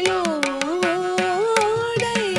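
Carnatic ensemble music in raga Hamsadhwani: a sustained melodic line bending through gliding ornaments, accompanied by a rapid pattern of mridangam and kanjira strokes.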